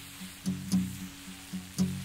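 Acoustic guitar, capoed at the second fret, picked alone: about five notes or chords struck at an uneven pace, each left to ring out and fade.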